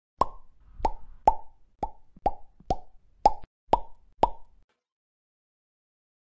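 An added editing sound effect: a cartoon-style 'plop' pop repeated nine times, about two a second, each one alike, then cut off to dead silence.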